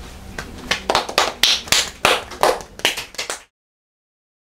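A few people clapping unevenly in a small room. The sound cuts off suddenly about three and a half seconds in.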